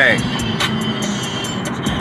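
Steady rushing hum of a car's cabin noise, even and unbroken.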